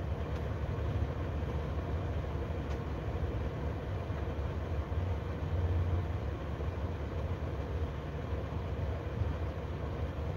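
Steady low rumble inside a car cabin.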